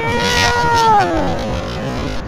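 A young child's drawn-out vocal sound, held on one high pitch for about a second and then sliding down as it fades.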